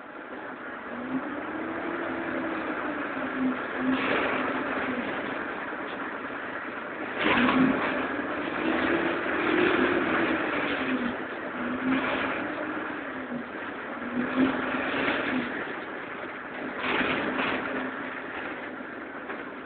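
Cabin sound of a Karosa Citybus 12M city bus under way: the engine note rises and falls several times as the bus accelerates and eases off, over steady road noise. A few knocks and rattles from the body come through, the loudest about halfway through and near the end.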